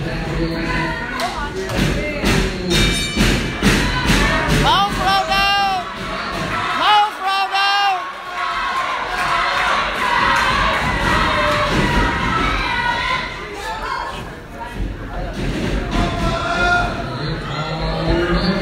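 Wrestlers hitting the ring, a run of heavy thuds in quick succession in the first third, over a small crowd cheering and children giving high-pitched shouts about five and seven seconds in.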